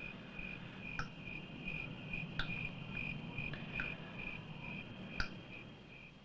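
Crickets chirping in a steady, evenly pulsed high trill. Sharp ticks come at a regular beat about every second and a half.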